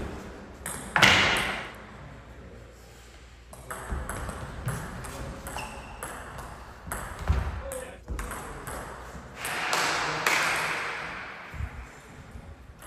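Table tennis ball being hit back and forth in a rally: a series of sharp, irregular clicks from the ball striking the paddles and bouncing on the table. Voices are heard at times over the rally.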